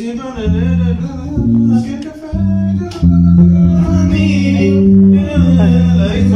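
A live band playing loudly in rehearsal: electric bass holding long low notes, with accordion and guitar over it.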